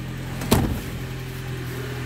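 Car engine idling steadily, heard from inside the cabin, with one sharp knock about half a second in.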